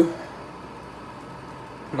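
A man's word trails off at the very start, then a steady, faint hiss and hum of a kitchen where burgers are cooking in a pan on the stove.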